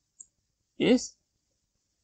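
A single faint computer-keyboard keystroke click, followed by a short spoken word.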